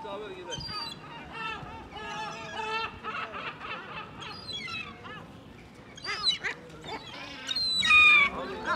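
Gulls calling again and again in short, harsh, pitched cries as they squabble over scraps of meat, with the loudest call near the end.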